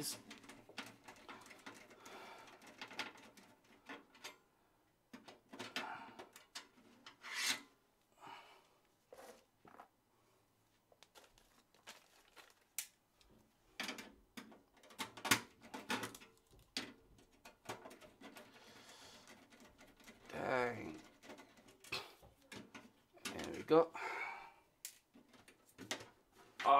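Metal expansion-slot covers being worked out of a PC case by hand and screwdriver: scattered clicks, taps and rubbing scrapes of metal on metal. The covers are stuck and resist coming out.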